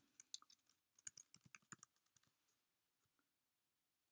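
Faint clicks of computer keyboard keys being typed in a quick run, stopping about halfway through.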